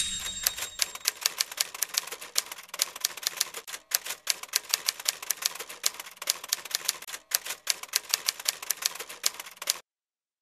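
Typewriter keystroke sound effect: a fast, uneven clatter of key strikes, several a second, with two brief pauses, stopping just before the end.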